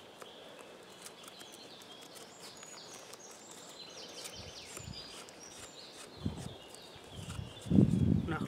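Blade of a Mikov Fixir folding knife shaving thin curls off a wooden stick, short scraping strokes that get louder near the end. Birds chirp faintly in the background.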